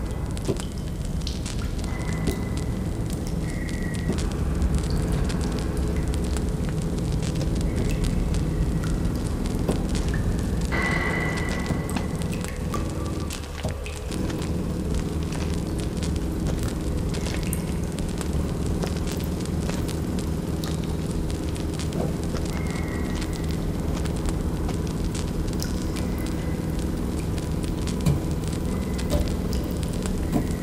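A burning hand-held torch crackling steadily over a continuous low rumble, with brief high tones sounding now and then.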